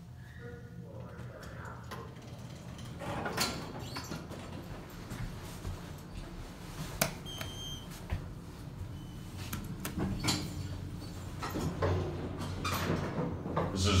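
Traction elevator's sliding car doors and signals: a short chime near the start, the doors sliding open, and about halfway a button click with a brief high beep, all over a steady low hum.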